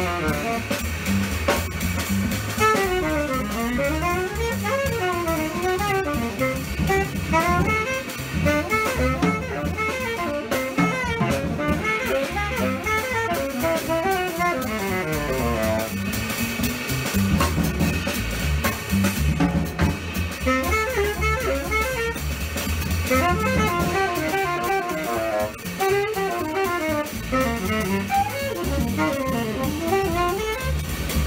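Tenor saxophone improvising fast eighth-note jazz lines on a blues, over a walking double bass and drum kit. The saxophone rests for a couple of bars near the middle while bass and drums keep going, then resumes its lines.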